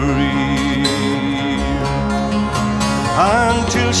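Traditional folk ballad music: a long held note with vibrato over steady accompaniment, then a male voice sliding into the next sung line near the end.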